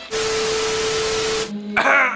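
TV-static glitch transition sound effect: a burst of loud white-noise hiss with a steady tone under it, lasting about a second and a half and cutting off suddenly.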